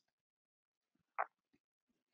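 Near silence: room tone, broken once about a second in by a single short, faint sound.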